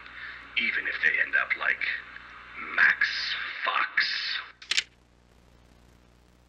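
A voice played back through an answering machine, thin and narrow like a phone line, ending in a sharp click near the end.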